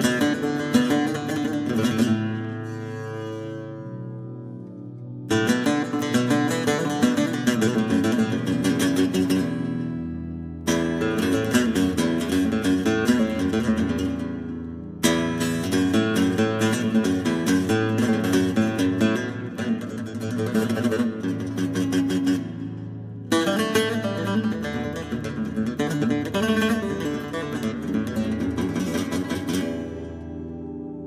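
Instrumental chillout music led by a picked Algerian mandole: quick runs of plucked notes over low held bass notes. New phrases come in with a sharp attack several times.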